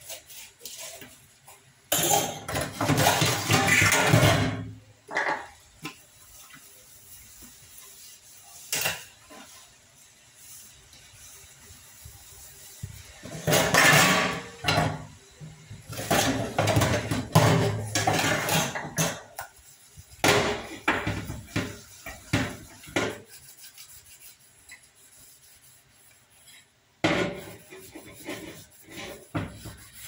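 Dishes being washed by hand in a stainless steel sink: glass and steel utensils are scrubbed and handled in several loud spells, with clinks of steel pots and dishes knocking together between them.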